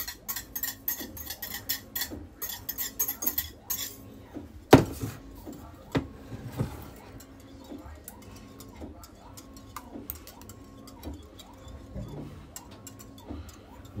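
Metal utensil clinking and scraping quickly against a glass bowl for about four seconds, then one loud knock and a few scattered clinks, with quieter faint tapping in between.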